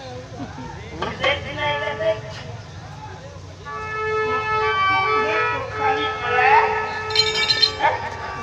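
A man's voice on the stage microphone for the first couple of seconds. Then, from about halfway, a held melodic line on one steady pitch lasts several seconds over a low hum from the sound system.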